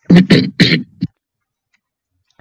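A man's voice making three short, harsh, breathy bursts in quick succession in the first second, then a smaller fourth one just after.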